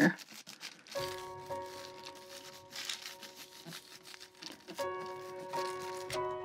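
Hands rubbing thin deli paper down onto a paint-covered gel printing plate to lift the print, a soft crinkling rustle of paper. Quiet background music with held chords comes in about a second in and changes near the end.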